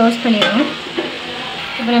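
Chopped tomatoes, onions and red chillies frying in oil in an aluminium pot, a steady sizzle, with a single metal click about a second in.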